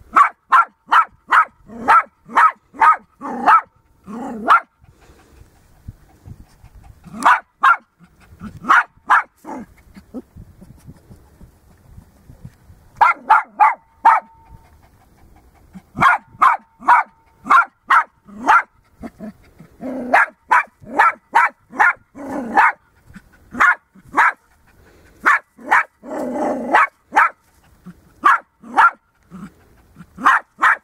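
Small long-haired dog barking in rapid runs of short, high yaps, several a second, with a few brief pauses. It is excited barking at a lizard that gapes back at it.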